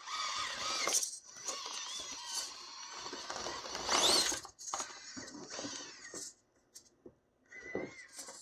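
Electric motor and drivetrain of an Axial AX24 micro RC crawler, with a new Micro Komodo motor, whining as it crawls. The pitch rises and falls with the throttle, with a sharp rising whine about four seconds in and quieter pauses near the end.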